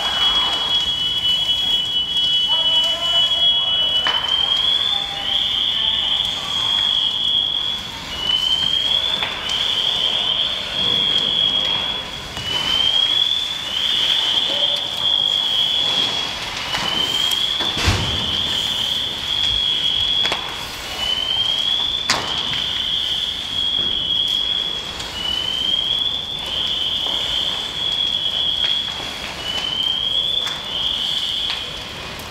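Electronic alarm sounding in a repeating cycle about every four seconds: a steady high tone that slides up into a fast warble. It plays over the noise of a vehicle fire, with a dull thud a little past halfway.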